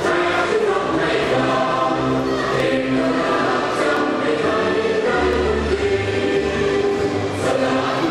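A choir singing with instrumental backing, in long held chords over a bass line.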